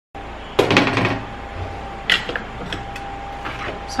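Tableware being handled on a plastic cutting board: a few light knocks and clinks as a glass bowl and plate are moved and set down. The loudest knock comes about half a second in and smaller ones follow, over a faint steady hum.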